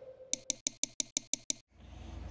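A clock-like ticking sound effect: about eight quick, even ticks, roughly six a second, stopping about a second and a half in.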